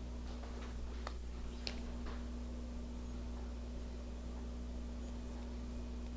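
A few faint clicks in the first couple of seconds from wire strippers working the ends of a four-conductor 22-gauge alarm cable, over a steady low hum.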